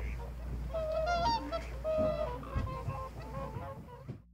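Whooper swans calling: a quick series of honking, bugle-like calls over a steady low rumble.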